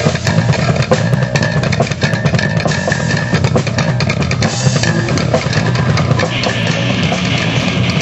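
Instrumental rock band playing live: electric guitars, bass and a drum kit, loud and continuous, with the high end getting brighter about six seconds in.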